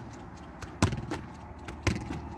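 Gaelic football being hand-passed against a concrete wall: two sharp knocks about a second apart as the ball is struck and bounces back off the wall.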